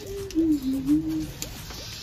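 A dove cooing: a short series of low, soft notes that step down in pitch and back up, lasting through the first second or so.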